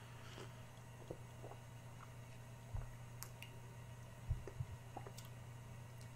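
A person drinking beer from a glass: faint sips and a few soft swallowing gulps, over a steady low hum.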